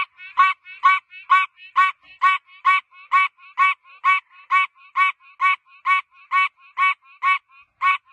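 Tree frog calling: a steady series of short, nasal croaks, a little over two a second.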